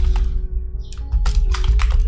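Computer keyboard typing: a few quick keystrokes near the start, then a cluster of keystrokes in the second half, over background music.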